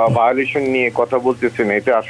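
Speech only: continuous talking in Bengali, with a faint steady hum underneath.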